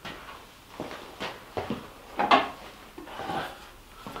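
Wooden workbench drawers slid open and shut several times in quick succession, each a short sliding knock. The runners have just been waxed so the drawers slide freely.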